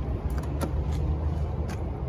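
Steady low rumble with a few light clicks scattered through it.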